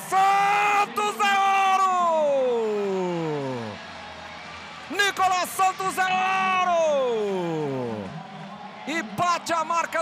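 A male sports commentator's long drawn-out celebratory yell, held about three seconds and sliding down in pitch, then a second such yell about five seconds in. Quick excited speech follows near the end.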